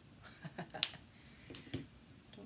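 A single sharp click a little before halfway, amid soft breathy sounds from the tail of a laugh.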